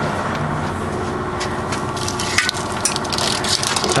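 Steady machinery noise with a faint hum, with a few light clicks and knocks in the second half.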